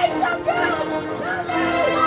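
Background music playing under short wavering voice-like calls.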